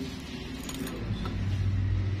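Light metallic clicks of small steel nail-care tools (nail nipper and probe) worked at a toenail's edge, the sharpest click just under a second in, over a low steady hum.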